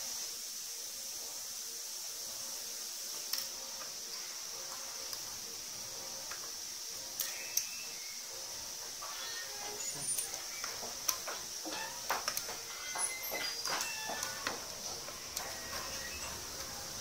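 Small light clicks and taps of tweezers and fine silver filigree wire against a wooden workbench while the wire is bent into petal shapes, a few at first and then coming in quick clusters through the second half, over a steady high hiss.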